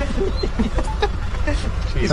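Faint talking from people close by over a steady low outdoor rumble.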